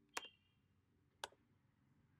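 Two sharp clicks from a computer keyboard, about a second apart, the first with a brief ring, over near silence.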